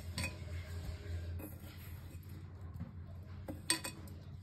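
A few sharp clinks of a utensil against a metal pressure cooker as fried soya chunks are tipped in onto the cooked pulao, the loudest two close together near the end, over a steady low hum.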